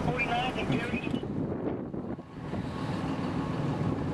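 Steady low rumble of a car heard from inside the cabin, engine and road noise. It dips briefly about two seconds in, then the low rumble carries on.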